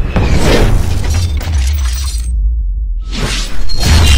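Cinematic sound effects for an animated logo intro, over music: a heavy bass rumble with crashing, shattering effects. The high end drops away for about a second, then a loud impact hits near the end.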